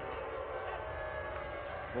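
Steady low background noise of an outdoor stadium during a break in play, with no single sound standing out.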